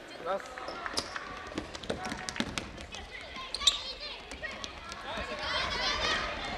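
Futsal ball being kicked and bouncing on an indoor court, sharp strikes echoing in a large hall, with players' voices calling out around them.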